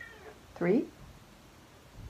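A domestic cat meowing: one short, loud meow about half a second in, its pitch rising then falling, after a fainter high call at the start. It is a hungry cat asking for food.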